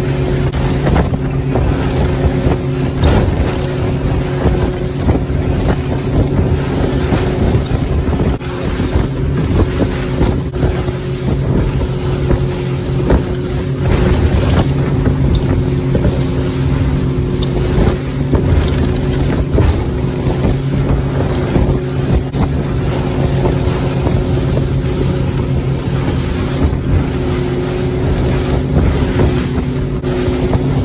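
Motorboat running at speed through choppy sea: a steady engine drone under the rush of water and spray along the hull, with wind buffeting the microphone.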